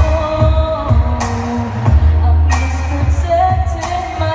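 A woman singing a pop song live into a microphone, holding long notes, over a backing track with bass and a drum beat landing about every second and a quarter.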